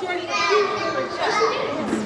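Children's voices: several children talking and calling out over one another, with no clear words.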